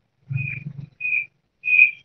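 Three short, high-pitched whistle-like notes at one steady pitch, a little apart, the last the loudest, coming through a video-call participant's open microphone.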